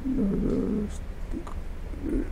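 A man's low, rough, drawn-out vocal sound, a creaky hesitation noise between phrases, lasting about the first second. It fades to faint studio hum.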